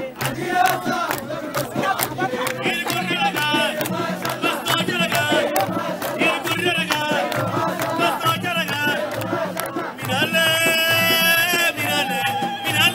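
Nubian wedding zaffa band playing: a steady drumbeat with voices chanting and singing over it amid a cheering crowd, and a long held note near the end.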